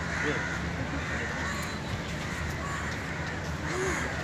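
Crows cawing several times over a steady low background rumble.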